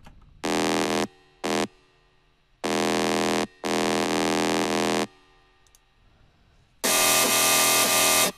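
Soloed bass synth from a Native Instruments Massive patch playing separate buzzy, sustained notes with silent gaps: a note, a short stab, then two longer notes back to back. Near the end comes a longer, harsher and noisier hit with a metallic texture, which comes from iZotope Trash distortion.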